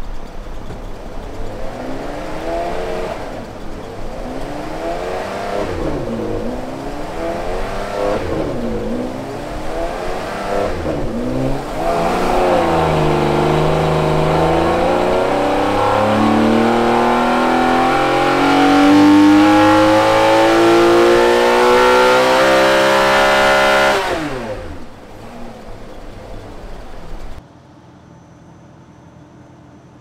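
Ferrari 599 GTB's naturally aspirated V12 on a chassis dyno. For the first twelve seconds the revs rise and drop back about five times. Then comes a full-throttle pull, the pitch climbing steadily for about twelve seconds until the throttle closes abruptly and the revs fall away.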